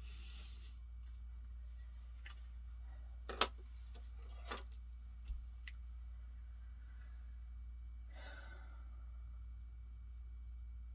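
Quiet desk-top handling over a low steady hum: a few light knocks, the loudest about three and a half seconds in, as a book is opened on the table, and soft paper rustles near the start and again about eight seconds in while a pen writes in a journal.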